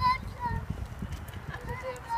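High-pitched voices of a young child and family calling briefly several times, over irregular footsteps on the platform paving as they walk past close by.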